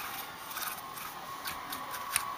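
Faint scratchy rubbing with a few light taps: a small paintbrush dusting weathering onto the plastic body of an HO-scale model locomotive.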